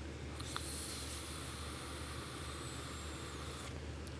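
A long draw on an Eleaf iStick TC200W box mod: a steady hiss of air pulled through the atomizer as its 0.58-ohm coil fires, starting about half a second in and stopping just before the end, with a light click near its start.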